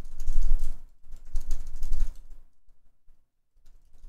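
Typing on a computer keyboard: a quick, dense run of keystrokes for the first couple of seconds, then a few scattered, quieter ones.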